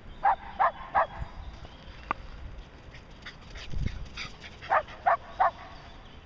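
Shetland sheepdog barking in two quick bursts of three sharp barks, one just after the start and one near the end, with a few fainter yips between. A single low thump comes in the middle.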